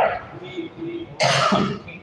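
A man coughs once, briefly, a little over a second in.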